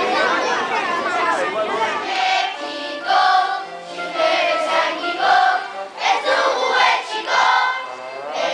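A large group of children singing a song together in unison, starting about two seconds in after a moment of crowd chatter.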